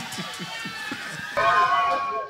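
Audience laughter and murmur after a joke. About one and a half seconds in, a louder steady held tone with several pitches comes in, like music starting.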